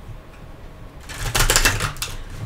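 A tarot deck being shuffled by hand: a quick, dense run of card clicks starting about a second in.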